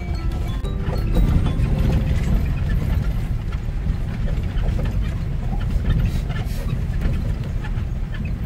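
A car driving slowly over a rough, stony dirt road, heard from inside the cabin: a steady low rumble with frequent knocks and rattles from the wheels and body.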